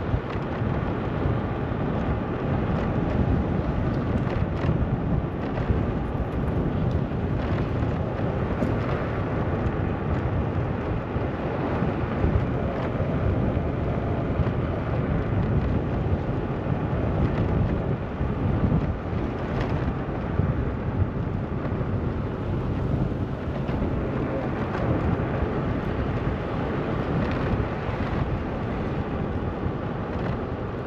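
Steady wind rumble on the microphone of a moving vehicle, with no clear engine tone standing out.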